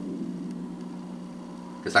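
A steady low hum with room tone, in a pause between a man's words; his voice starts again near the end.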